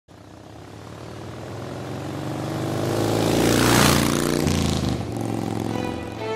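A motorcycle approaching and passing by, its engine note growing steadily louder to a peak a little before four seconds in, then dropping in pitch as it goes past.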